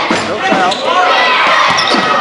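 Basketball dribbled on a hardwood gym floor, a few bounces, over shouting voices from players and spectators.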